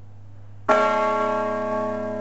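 A single church bell strike about two-thirds of a second in, with its many overtones ringing on and slowly fading.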